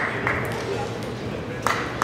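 Celluloid table tennis ball struck back and forth in a fast rally, the crisp ticks of paddle and table hits coming about three a second. The hits stop shortly after the start, and after a pause of over a second the ticks pick up again near the end.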